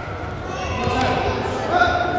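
Voices echoing in a large gymnasium, with one drawn-out call starting near the end.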